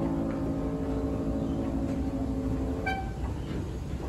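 Grand piano's last chord ringing on after the hands leave the keys, fading out about three seconds in over the low noise of a large hall. A brief high tone sounds just as it dies away.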